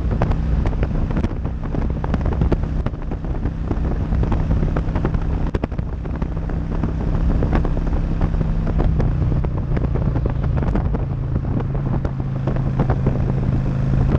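Motorcycle engine running steadily at highway speed, with heavy wind noise buffeting the microphone and crackling throughout. The engine note drops slightly about nine seconds in.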